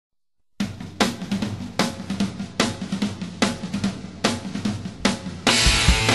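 Punk rock song intro: a drum kit starts about half a second in, playing a driving beat with loud cymbal-and-drum accents about every 0.8 s. Near the end the full band comes in, much louder and denser.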